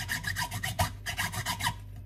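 A hand saw rasping back and forth through raw pork ribs in quick, even strokes that stop shortly before the end. The blade is struggling and barely cutting through the bone.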